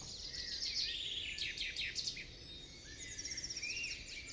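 Several wild birds calling: many short, falling chirps, and a rapid trill of repeated high notes about three seconds in.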